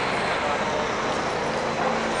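Busy city street noise: a steady wash of passing traffic mixed with the indistinct voices of people nearby.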